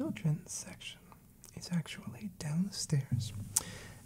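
A man speaking softly and close to the microphone, in a hushed voice.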